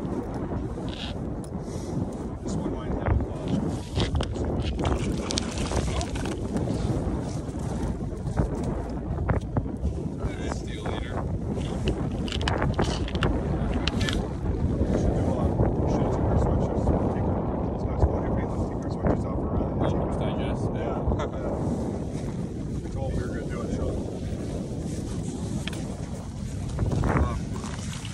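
Strong wind buffeting the camera's built-in microphone, a continuous low rumble that swells in the middle, with scattered small clicks and knocks from handling.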